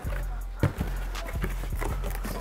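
Cardboard packaging being handled and pulled out of a box: several short knocks and scrapes, over steady background music.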